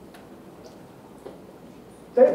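Quiet room tone of a lecture hall, with a few faint scattered ticks.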